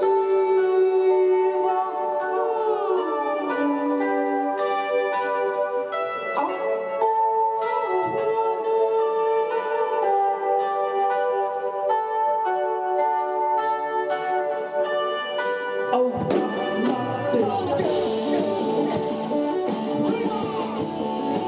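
Live rock band playing an instrumental passage: held keyboard notes and a lead melody with bent, gliding notes, with the drums and guitars coming in with a full band sound about sixteen seconds in.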